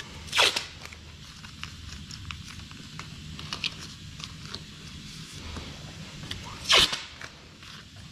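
Masking tape ripped off the roll twice, about half a second in and again near the seventh second, with masking paper crinkling and small ticks in between as it is pressed along the panel edge. A steady low hum runs underneath.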